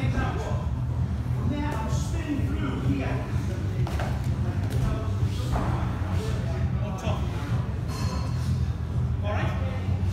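Indistinct voices of people talking in a large hall, over a steady low hum.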